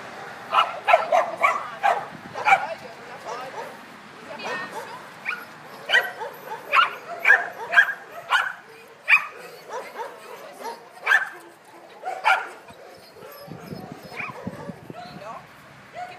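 A dog barking repeatedly: around twenty short, sharp barks, singly and in quick runs, stopping about three-quarters of the way in.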